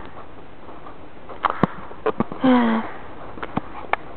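A person sniffing, with a short voiced hum about two and a half seconds in, over a steady hiss and a few light clicks.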